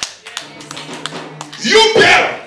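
Congregation clapping in a quick, even rhythm, with a low held musical note under it. A man's loud voice breaks in near the end.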